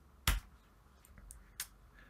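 Keystrokes on a computer keyboard: a sharp click a little after the start, then a fainter click about a second and a third later.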